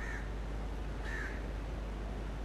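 A bird calling twice, two short arched calls about a second apart, over a steady outdoor background hiss.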